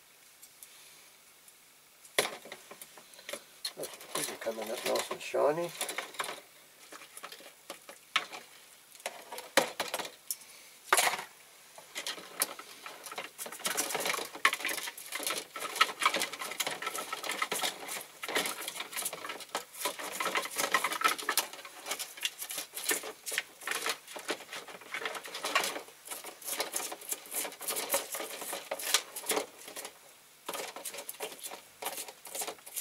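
Small diecast metal parts clinking against each other and the side of a plastic tub as they are handled and scrubbed in liquid paint stripper. The clicks and scraping are dense and irregular, starting about two seconds in.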